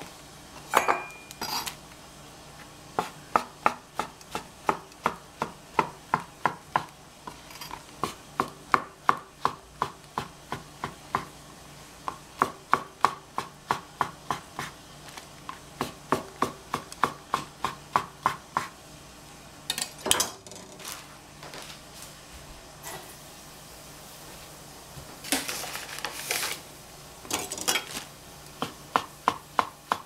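Chef's knife slicing shiitake mushrooms on a plastic cutting board: a steady run of sharp knife strikes on the board, about two to three a second, with a couple of longer, noisier sounds in between and more strikes near the end.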